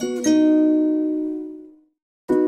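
Background music: a plucked-string chord is struck and left to ring, fading away before the end.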